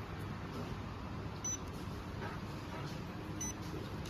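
Kelier H9 handheld inkjet printer giving two brief high-pitched beeps about two seconds apart as it prints a date code onto a small plastic bottle, over a steady low hum.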